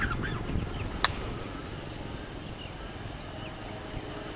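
A few short bird calls near the start over a steady low outdoor rumble, with one sharp click about a second in.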